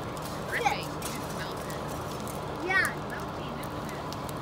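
A burning school bus crackling and popping, over the steady low rumble of idling fire engines. Two short honking calls sound about half a second and about three seconds in.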